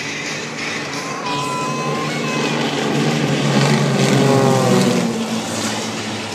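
A formation of four piston-engined propeller aerobatic planes flying past, their engine drone swelling to its loudest about four to five seconds in and then dropping in pitch as they go by.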